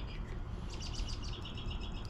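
A small bird chirping in the background: a quick run of short, high chirps starts about half a second in, over a low steady outdoor background.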